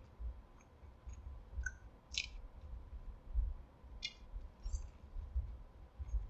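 A person chewing a mouthful of chicken sandwich: soft low bumps from the chewing, with a few wet mouth clicks and smacks, the clearest about two and four seconds in.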